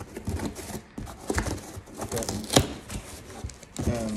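Cardboard shipping box being opened by hand: flaps pulled and scraped, with rustling and a few sharp cracks of the cardboard.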